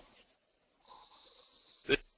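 A speaker breathing into a close microphone: a breathy hiss lasting about a second, ending in a short vocal sound near the end.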